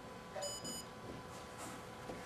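Two short, high electronic beeps in quick succession from a LEGO Mindstorms robot's programmable brick, as its program is started.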